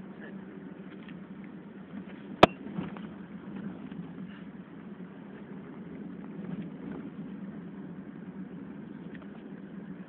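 A car driving, heard from inside the cabin: steady engine and road noise, with one sharp click about two and a half seconds in.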